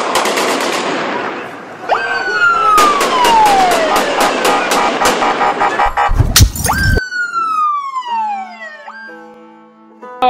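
Rapid sharp bangs, then a siren wail sweeping down in pitch about two seconds in and again about seven seconds in, with a loud low blast just before the second sweep. Near the end, steady held tones remain as the sound fades.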